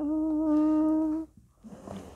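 A person humming one steady note with closed lips for just over a second, then stopping.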